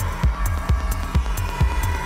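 Deep techno mix: a steady four-on-the-floor kick drum a little over two beats a second, hi-hats falling between the kicks, and a sustained synth drone in the middle range.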